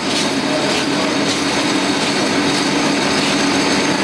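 A steady mechanical running noise with one low, even hum through it, like a motor or engine running close by.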